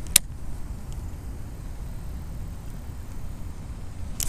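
Baitcasting reel handled during a cast: one sharp click just after the start, then a low steady rumble under a few faint ticks.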